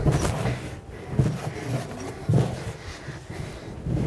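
Hands mixing a stiff sweet-bread dough of flour, butter, eggs and sugar in a stainless-steel trough: soft rubbing and squishing with a few dull thumps.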